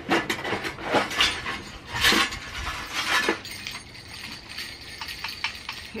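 Christmas decorations being rummaged through in a plastic storage tote: a run of clinks, knocks and rustles, the loudest about two seconds in, then lighter clicks toward the end.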